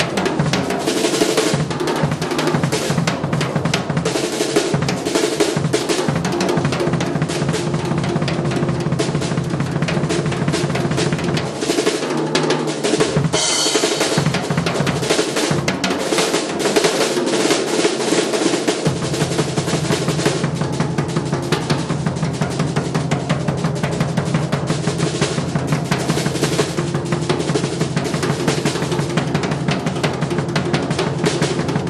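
Jazz drum solo on a drum kit: fast snare strokes, rolls and rimshots over bass drum, with cymbals, and a bright cymbal wash a little before the middle.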